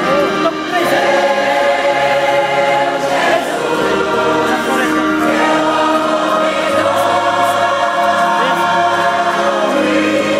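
Large mixed choir of women and men singing a gospel hymn together, holding long sustained chords that change every few seconds.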